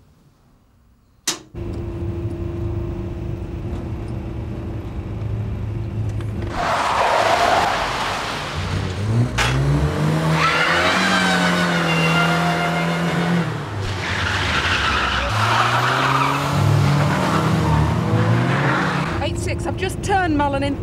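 A car driven hard, engine revving, with tyres squealing through turns in three long squeals over the second half. The first second is quiet, broken by a sharp click.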